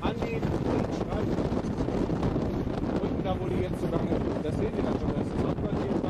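M1A1 Abrams tank driving across soft ploughed earth, pushing soil up in front of it, as a steady low rumble. Wind buffeting the microphone is mixed in.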